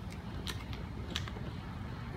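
Plastic wheels of a toy push car and a wagon rolling over asphalt: a steady low rumble, with a few sharp plastic clicks and rattles.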